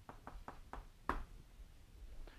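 Chalk writing on a blackboard: a run of short, faint taps and clicks as symbols are written.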